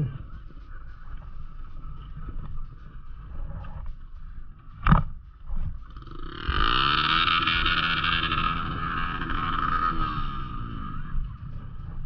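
Dirt bike engine running at low revs, with a sharp knock about five seconds in. About six and a half seconds in it revs up, holds high for about four seconds, then eases off.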